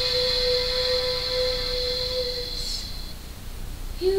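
A young girl singing one long, held note, slow and unaccompanied in feel, the drawn-out opening of a Christmas pop song. It fades out a little under three seconds in.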